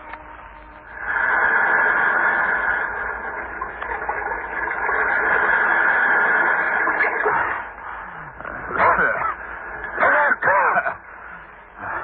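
Radio-drama sound effect of steady rushing surf for several seconds, then a man's strained gasps and groans as he struggles out of the water near the end.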